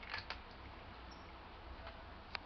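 A cat chewing food, with a few faint crunching clicks in the first half second and another near the end, over a steady low background rumble.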